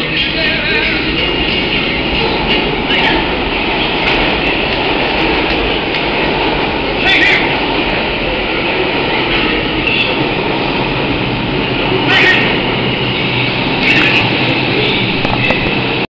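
Subway train running through the station, a loud steady rumble and rattle of the cars on the rails, with a few short sharp noises over it about 3, 7, 12 and 14 seconds in.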